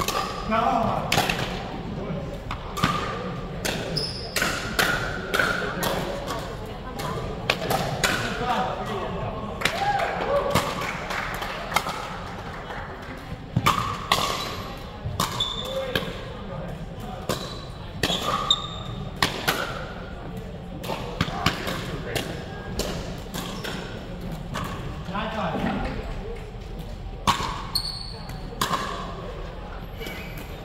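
Pickleball paddles hitting a plastic ball over and over in irregular rallies, a string of sharp pops through the whole stretch, heard in a gymnasium along with the voices of players and onlookers.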